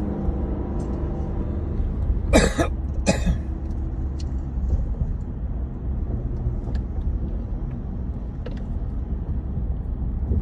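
Steady road and engine rumble inside a moving car's cabin, with a person coughing twice, loudly, about two and a half and three seconds in.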